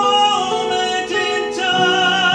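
A man singing a held, sustained melody in a trained voice, with a wavering vibrato on each note, over a steady accompaniment.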